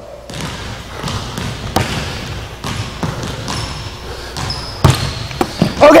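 A basketball bouncing a few times at irregular intervals on a hardwood gym floor, the loudest bounce about five seconds in, with brief high sneaker squeaks on the floor a little before it.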